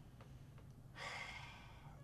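A man sighs, a single breath out lasting about a second that starts about a second in, as he thinks over a question.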